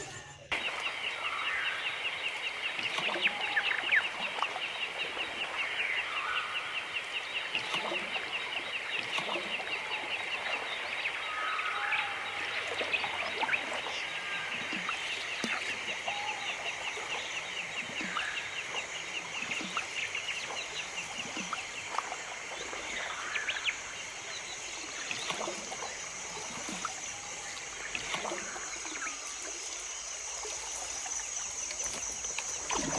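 Tropical rainforest ambience: a dense, rapidly pulsing high chorus of calling animals starts about half a second in, joined about halfway by a higher steady trill, with scattered short bird calls over it.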